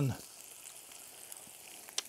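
Fresh chanterelles frying in fat in a frying pan, a faint steady sizzle. A single sharp click comes near the end.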